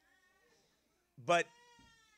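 A man's voice says a single word, "But", after a short pause. Faint steady tones fade out before the word and linger briefly after it.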